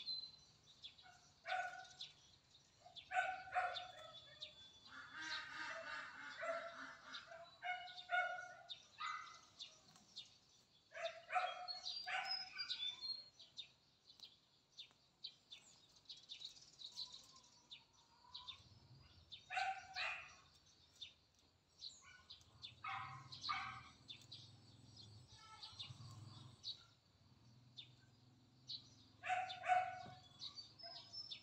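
A dog barking repeatedly in short groups, with birds chirping high above it.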